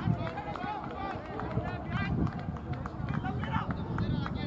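Cricket players' voices calling and shouting across the field, the words not picked out, over a steady low rumble.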